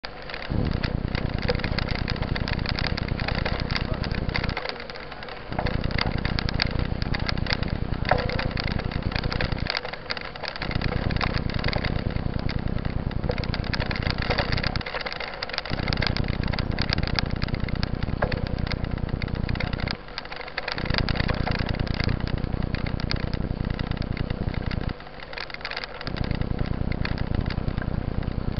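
Wind buffeting and road rumble on a bicycle-mounted camera's microphone while riding a dirt road, with dense crackling and rattling throughout. The noise dips briefly about every five seconds.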